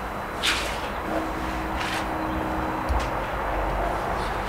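Steady outdoor background rumble, with two brief swishing sounds about half a second and two seconds in.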